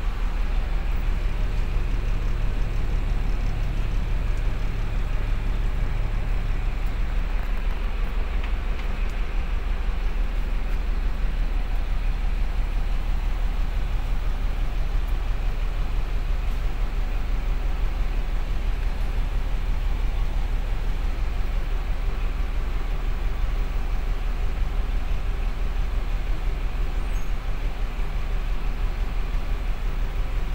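A bus's diesel engine idling steadily, heard from inside the passenger cabin as a constant low rumble.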